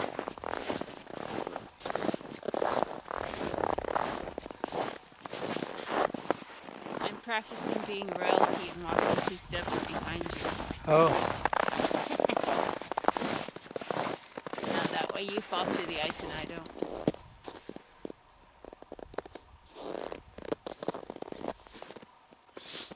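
Footsteps crunching through snow at a walking pace, with winter clothing rustling, growing quieter for the last few seconds.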